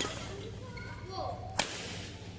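Strings of a small-frame badminton training racquet striking a shuttlecock: two sharp cracks about a second and a half apart, each with a short ring of hall echo.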